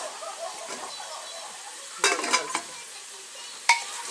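Meat searing in an aluminium pressure-cooker pot, a steady sizzle. A few knocks against the pot come about two seconds in, and one sharp, ringing knock comes near the end.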